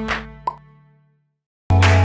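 The last notes of a cartoonish animated-logo jingle, with a short sound-effect click about half a second in, fading out to silence. Near the end, background music starts abruptly.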